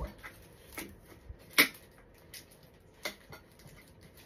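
A few scattered light clicks and taps, four or five in all, the sharpest about a second and a half in.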